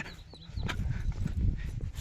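Footsteps on a sloping concrete footpath, uneven and low, with a few faint clicks.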